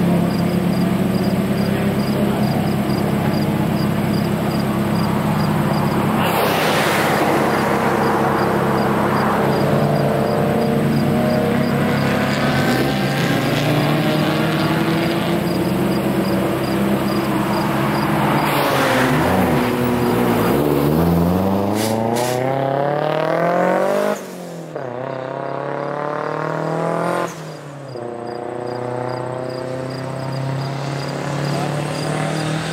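Car engines running on a race circuit. Two cars pass in short noisy swells. About two-thirds of the way through, one engine accelerates hard with its pitch climbing for several seconds, then the sound drops off suddenly, dipping again a few seconds later.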